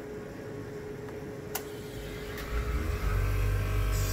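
The circulating fan runs steadily, then a sharp relay click comes about one and a half seconds in. Half a second later the heat-pump water heater's compressor starts on its variable-frequency drive's first-stage 50 Hz speed. Its low hum builds and settles louder and steady about a second later.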